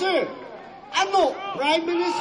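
A man's voice speaking in short phrases.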